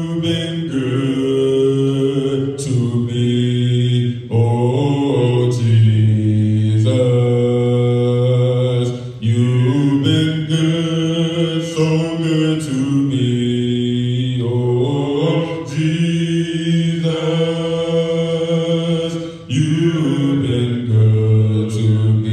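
Slow worship singing in long held notes that slide from one pitch to the next every few seconds, with no beat or drums.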